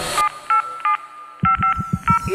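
Telephone keypad dialing tones used in a reggaeton track: a series of short two-tone beeps over a thinned-out mix, with a pulsing bass beat coming in about halfway through.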